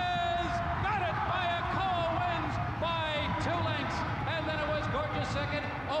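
Excited race-call commentary carrying on over the finish, with a long drawn-out shout near the start, over a low steady background noise of the broadcast.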